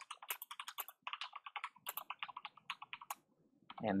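Typing on a computer keyboard: a quick, uneven run of key clicks that stops about three seconds in.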